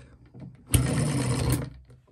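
Miniature model petrol engine flicked over by hand at the flywheel, breaking into a rapid, buzzing mechanical run for just under a second before dying away.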